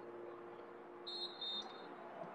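Faint steady hum, and about a second in a short, high referee's whistle lasting under a second, briefly broken in the middle, as play is readied after a penalty.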